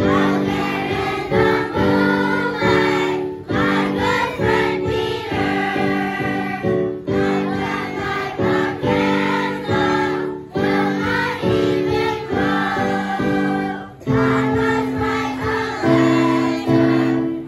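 A class of second-grade children singing together as a choir, accompanied by piano.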